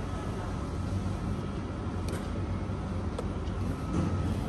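A steady low hum with a faint, steady high-pitched tone over it, and two faint clicks in the second half.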